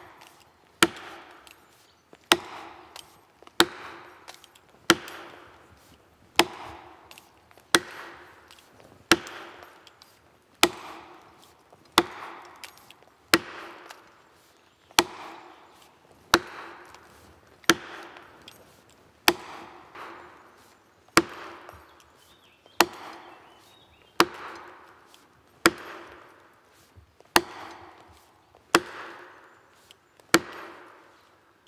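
Plastic felling wedges in the back cut of a spruce being driven with a long-handled hammer: sharp, regular blows about every one and a half seconds, about twenty in all. He works the wedges in turn, a blow or two on each, to lift the back-leaning tree toward its felling direction.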